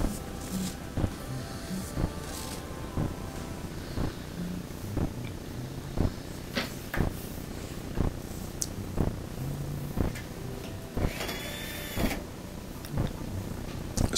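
Scattered clicks and knocks of a dryer's control panel and screws being handled. About eleven seconds in, a Milwaukee cordless drill/driver runs for about a second, driving a panel screw.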